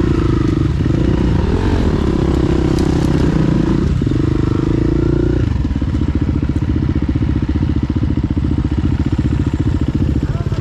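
KTM 350 EXC-F single-cylinder four-stroke dirt bike engine running on the trail, its revs rising and falling with the throttle, then dropping about halfway through to a low, even putt as the bike slows to idle.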